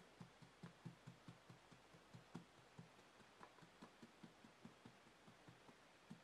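Faint, quick soft taps, about four to five a second: a paintbrush dabbing paint onto a vinyl reborn doll's arm.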